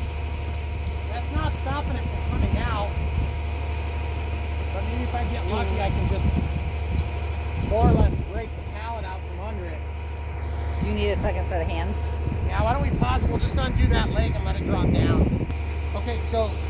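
Knocking and scraping as a steel baler leg is worked loose from a hole in a wooden pallet, with a louder knock about eight seconds in and more toward the end. Under it runs a steady low machine hum, with faint voices.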